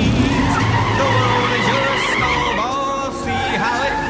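Car tires squealing and skidding on pavement over the low rumble of a car engine.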